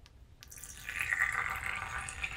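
Water poured from a plastic pitcher into a large glass wine goblet, splashing steadily as the glass fills. The pouring starts about half a second in.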